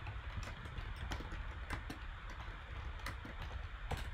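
Typing on a computer keyboard: irregular key clicks, about three a second, over a low steady hum.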